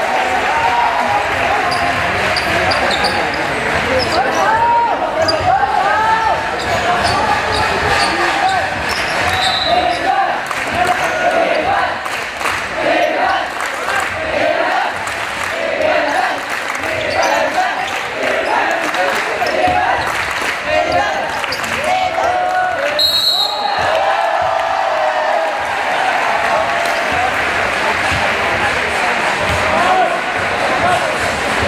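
A basketball bouncing on a hardwood court, with shoes on the floor and many voices shouting throughout, echoing in a large sports hall.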